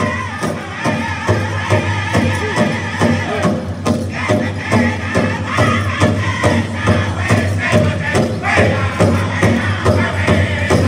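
Powwow drum group singing over a steady, even beat on the big drum, in the first push-up (round) of the song.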